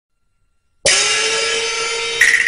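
A single crash of Cantonese opera metal percussion about a second in, ringing on with a bright, shimmering high sound and a steady held tone underneath.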